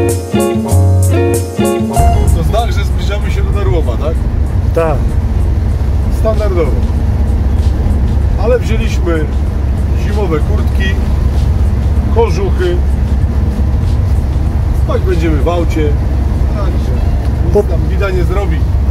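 Guitar music for about the first two seconds, then the steady engine and road rumble inside a van's cab while driving, with voices talking over it.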